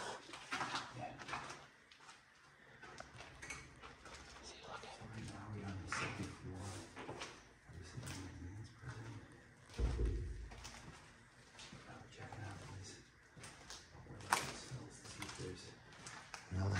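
Low, indistinct talking, with a dull thump about ten seconds in and a sharp click a few seconds later.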